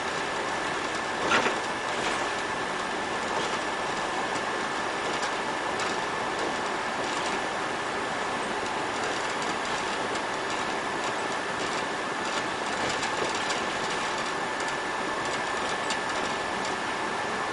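Inside a city bus driving along a street: a steady hiss of running and road noise with a constant high whine. A brief knock comes about a second and a half in, and faint rattles follow it.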